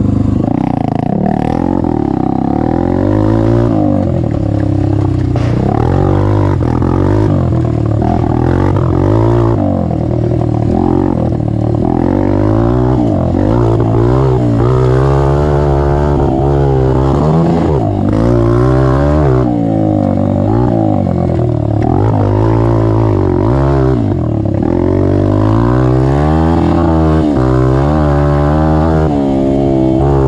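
Honda CRF150F single-cylinder four-stroke dirt bike with its stock exhaust baffle removed, pulling away and ridden hard. The engine pitch climbs and drops again and again with the throttle.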